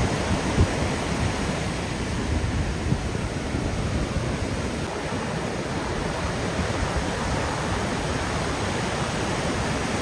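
Ocean surf breaking and washing up the beach, a steady roar of rushing water.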